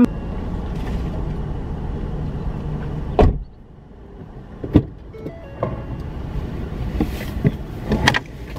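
Inside a car, a steady low rumble ends about three seconds in with a sharp knock. Quieter cabin sound follows, with scattered clicks and knocks, and a louder knock near the end as someone climbs into the seat.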